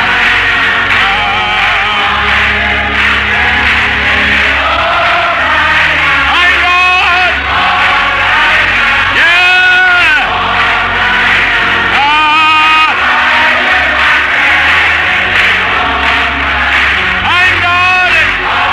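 Gospel music: a choir or congregation singing over long sustained low accompaniment notes, with strong vibrato voices swelling out above the rest four times.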